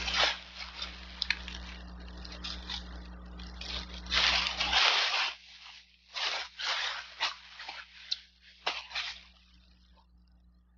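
A thin plastic shopping bag rustling and crinkling as it is handled. The sound comes in irregular bursts and is loudest about four to five seconds in.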